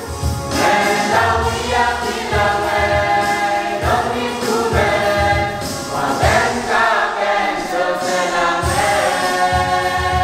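Young church choir singing a gospel hymn together, with a steady low beat underneath.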